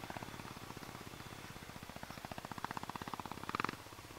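A motorcycle engine running at low speed on a dirt trail, a fast, even pulsing beat. The beat grows louder and brighter about halfway through, then falls away just before the end.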